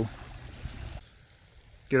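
Small waves lapping gently at the shore, a faint steady wash of water. About a second in it drops away to near silence.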